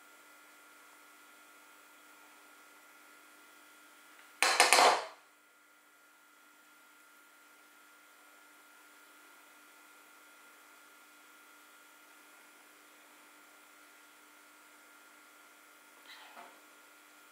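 A kitchen knife clattering against a bowl once, for about half a second, around four seconds in, over a faint steady room hum.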